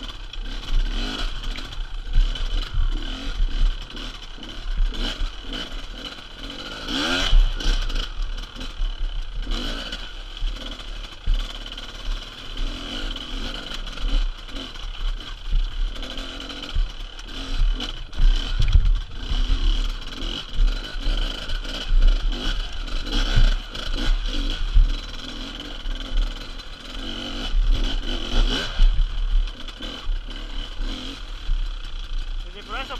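Enduro dirt bike engine revving up and down with the throttle while riding over rocks, with clatter from the bike on the stones. One sharp rising rev comes about seven seconds in.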